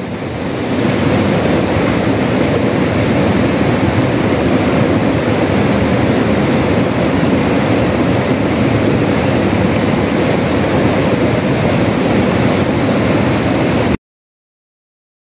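Mountain stream rushing over boulders: a steady, dense rush of flowing water.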